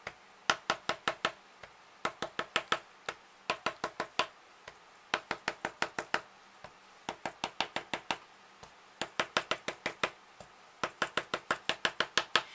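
Pencil eraser tapping ink dots onto paper: quick runs of about five to eight light taps, roughly six a second, separated by short pauses, with a single fainter tap in some of the pauses.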